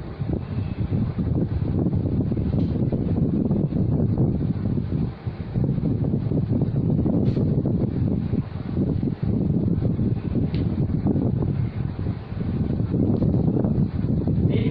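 Steady, fairly loud wind rumble buffeting the microphone. Two faint short squeaks come in the middle, as the marker is drawn across the whiteboard.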